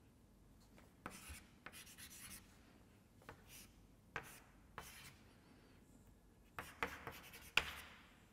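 Chalk writing on a blackboard: short, faint scratching strokes in irregular clusters, with the busiest and loudest strokes near the end.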